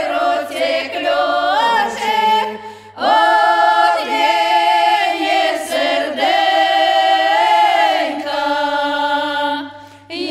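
A group of eight elderly village women singing a traditional Ukrainian folk song a cappella in several voices. One phrase ends with a short pause for breath just before three seconds in, then the voices enter together on a new phrase with long held notes, and another phrase tails off near the end.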